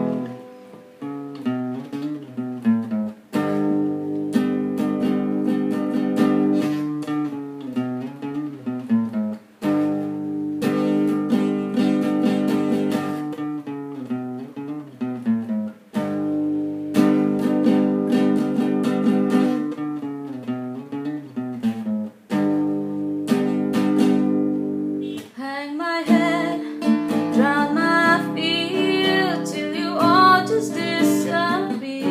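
Acoustic guitar with a capo, strummed and picked through a repeating chord pattern, with a brief break about every six seconds. A woman's singing voice comes in over the guitar about four seconds before the end.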